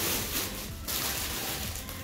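Clear plastic packaging rustling and crinkling as a wrapped baby garment is picked up and handled.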